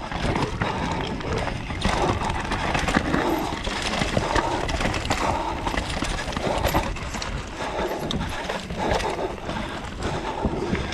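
Mountain bike descending a dirt forest singletrack: a continuous rumble of tyres over earth, roots and stones, with rapid irregular knocks and rattles from the bike.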